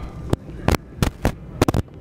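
About half a dozen sharp, irregular clicks and pops over a low steady background hum.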